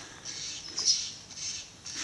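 A bird call, brief and high-pitched, about a second in, over a low outdoor background.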